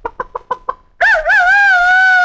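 Farmyard chicken sounds on an old 78 rpm record: a run of about six quick clucks, then, a second in, a long rooster crow that wavers at first and then holds a steady pitch.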